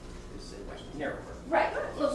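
Indistinct voices of people talking among themselves in a meeting room, with a louder voice near the end.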